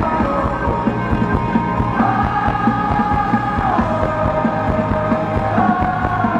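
Live rock band playing: electric guitar and drums, with long held melodic notes lasting a couple of seconds each over a steady drum beat.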